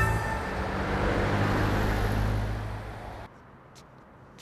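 Road traffic noise, a steady rush with a low hum, that cuts off abruptly a little over three seconds in.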